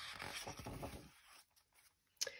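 A page of a picture book being turned by hand: paper rustling and sliding for about a second and a half, then stopping.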